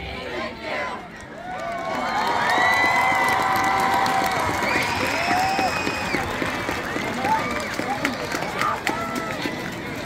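Stadium crowd cheering and whooping, swelling about two seconds in, just after the marching band's music stops, then slowly tapering off.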